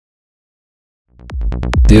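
After about a second of silence, electronic dance music fades in quickly: a fast run of drum hits over a deep bass, building to full level near the end.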